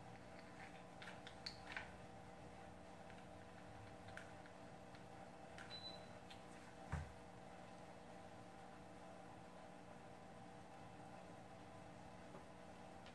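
Near silence over a steady low hum, broken by a few faint clicks and light taps of broken mirror pieces being handled and pressed into glue. The loudest sound is a single soft knock about seven seconds in.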